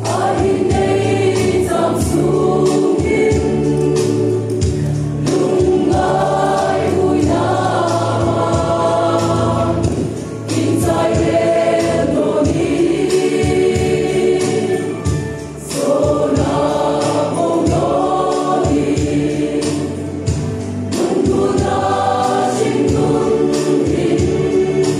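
Mixed choir of women and men singing a gospel hymn into microphones, phrase after phrase with short breaths between, over low sustained accompaniment notes and a steady percussive beat.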